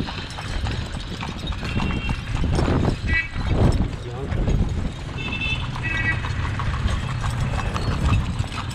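Carriage horse's hooves clip-clopping steadily on an asphalt road. A few short high-pitched tones sound about two, three and five to six seconds in.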